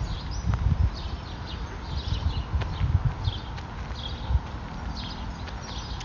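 Footsteps on a dry dirt bank, an irregular low thudding, with short high bird chirps scattered through.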